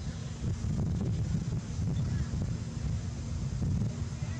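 Wind buffeting the microphone: a low, uneven rumble that gusts a little louder about half a second in.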